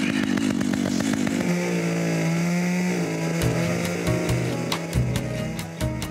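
Two-stroke chainsaw engine running a rope capstan winch, steady and loud, with a change in pitch about a second and a half in. Music plays underneath.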